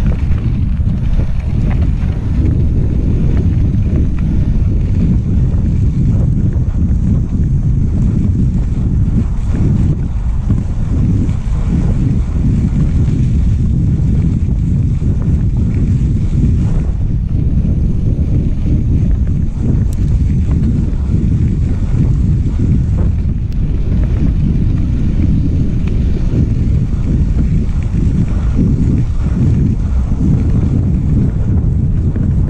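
Wind buffeting the microphone of a handlebar-mounted action camera as a mountain bike rolls along a dirt road. The noise is loud, low and steady throughout.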